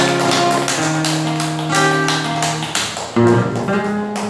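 Acoustic guitar playing unaccompanied, picked notes and strummed chords left to ring, with a louder strummed chord about three seconds in.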